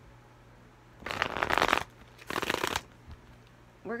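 A deck of tarot cards shuffled by hand, in two bursts of rapid card flutter: the first about a second in, the second shorter one half a second later.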